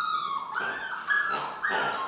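Doodle puppies whining and yipping, about four short high-pitched calls in quick succession.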